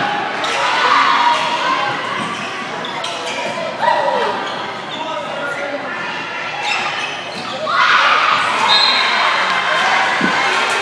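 Volleyball rally in an echoing school gymnasium: sharp ball hits over spectators' voices, with a louder burst of crowd shouting and cheering near the end as the point is decided.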